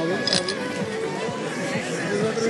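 Voices over music, with a short clink about a third of a second in.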